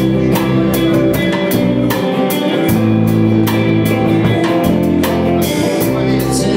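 Rock band playing an instrumental passage: electric guitar and bass over a steady drum-kit beat with regular cymbal hits.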